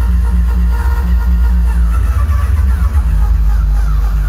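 Uptempo hardcore dance music played loud over a festival sound system: a continuous heavy bass kick under a repeating low riff, with short falling synth notes above.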